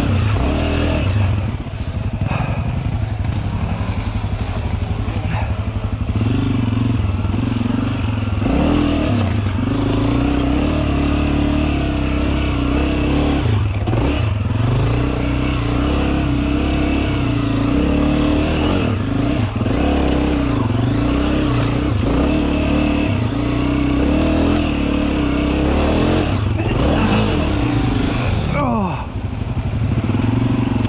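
Dirt bike engine running as the bike picks its way down a rough trail, its revs stepping up and down with the throttle and dropping briefly a few times. Occasional knocks from the bike over rough ground.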